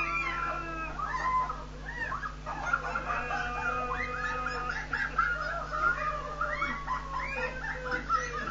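Several people shrieking, squealing and laughing as buckets of ice water are poured over them: many short, overlapping high-pitched cries, over a steady low hum.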